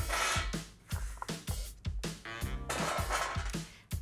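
Background music with a steady bass beat and a sustained melodic passage in the middle.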